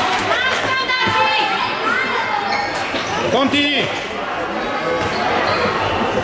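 Echoing sports-hall sound of a youth indoor football match: shouting voices, shoe squeaks and thuds of the ball on the wooden floor.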